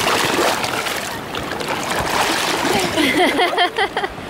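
Sea water splashing and rushing as a woman and a small child plunge under the surface together and come back up. Short voice sounds, gasps or exclamations, come near the end.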